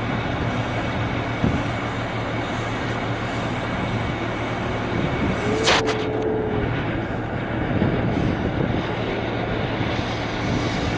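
Steady rumble and rushing noise of a running vehicle engine. About five and a half seconds in there is one short sharp sound, then a steady tone for about a second.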